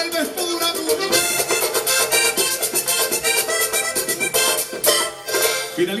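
Live vallenato band playing a fast instrumental passage led by accordion, over a steady rhythm of hand percussion and drums. The music breaks off near the end.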